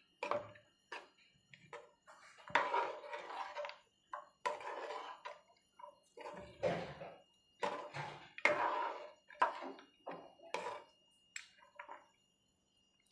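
A spoon stirring thick gravy in a cooking pot, mixing in freshly added ground spices: about a dozen irregular scraping strokes, each half a second to a second long, with short silent gaps between them.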